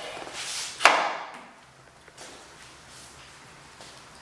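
Hand tools being handled at a workbench: a few light knocks, then one sharp knock with a short ring about a second in, after which only faint room sound remains.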